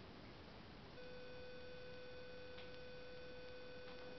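A faint, steady high tone starts about a second in and holds without change, with two faint clicks over it.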